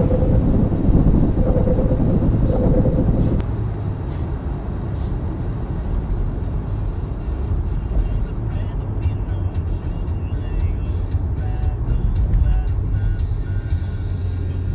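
Steady low road rumble heard inside a car driving through a road tunnel, heaviest in the first three seconds with a repeated hum, then easing slightly. Background music comes in over it about halfway through.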